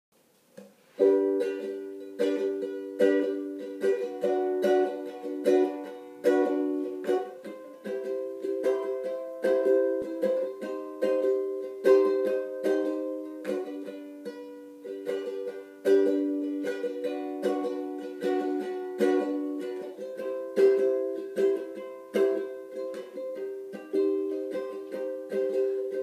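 Ukulele strummed in a steady rhythm of chords, starting about a second in: the instrumental intro to a folk song.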